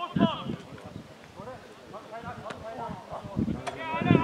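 Footballers shouting and calling to each other on the pitch during play, loudest at the start. Two sharp knocks cut through, one past the halfway point and one near the end.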